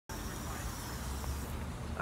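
Steady road-traffic background noise, a low rumble with a faint high-pitched whine held over it.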